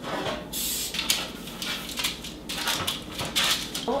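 Cooking oil sprayer hissing in several short bursts onto parchment paper in metal baking pans, with parchment paper crinkling and the pans being handled in between.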